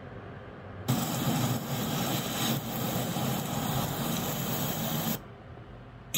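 A steady, loud hiss of rushing noise that starts abruptly about a second in and cuts off suddenly about four seconds later.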